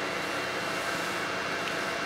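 Steady whir of a 10-watt diode laser engraver at work on steel: the laser module's cooling fan and the machine's motors running evenly, with a faint high steady tone.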